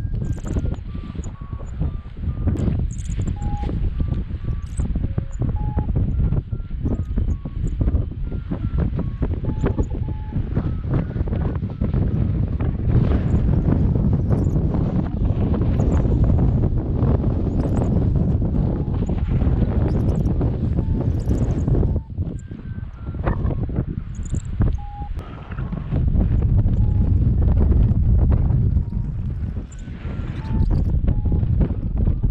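Airflow buffeting the microphone in paraglider flight, a steady low rumble that eases briefly about two-thirds of the way through. Faint short beeps at changing pitch sound underneath.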